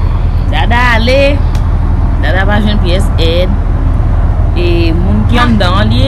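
A woman talking in short phrases over a loud, steady low hum.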